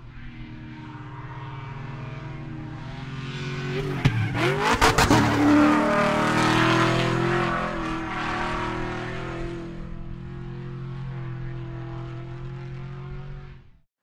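Motor racing sound effect: race car engines running, swelling to a loud pass about five seconds in, then a steadier engine note that cuts off just before the end.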